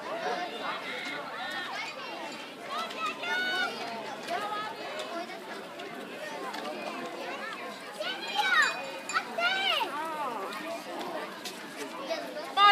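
Spectators' voices chattering over one another, with no clear words, and a couple of louder, high-pitched calls about eight and nine and a half seconds in.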